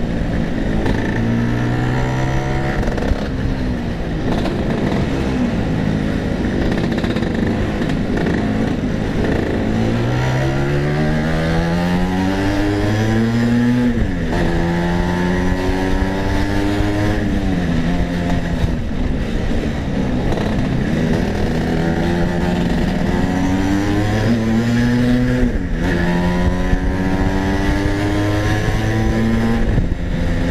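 Tuned two-stroke Vespa racing scooter engine under way, its pitch climbing as it accelerates and dropping abruptly at each gear change, several times over.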